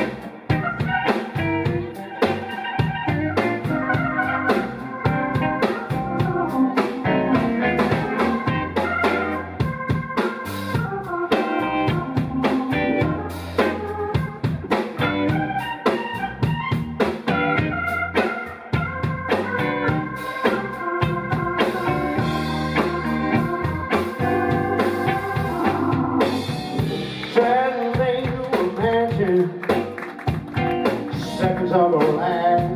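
Live blues-rock band playing: organ, electric guitar, bass guitar and drum kit.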